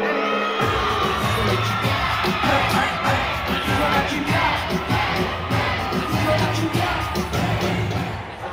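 Live urban music (reggaeton/trap) played loud through a concert sound system, with a bass-driven beat. Over the music the crowd cheers and sings along.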